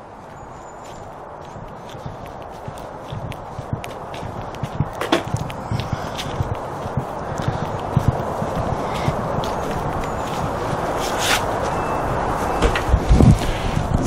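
Footsteps of a person walking on a paved path, a scatter of light steps, over a rushing noise that grows steadily louder.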